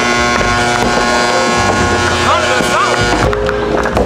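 Skee-ball balls rolling up wooden lanes with a low rumble, over a constant din of arcade machines' electronic tones and short rising-and-falling beeps.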